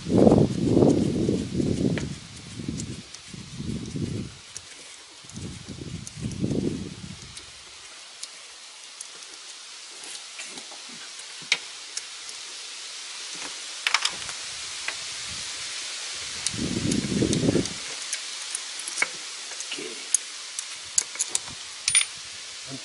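Hand work in a car's engine bay while a bolt is undone: rustling of a gloved hand among hoses and parts, and scattered light clicks of metal on metal. Irregular low rumbling bursts come and go, the loudest in the first two seconds.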